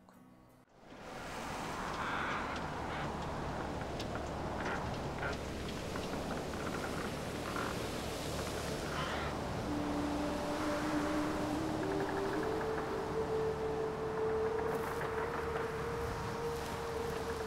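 Sandstorm wind blowing hard, a steady rushing noise that fades in about a second in. From about ten seconds in, a low moaning howl sits over it and steps up in pitch.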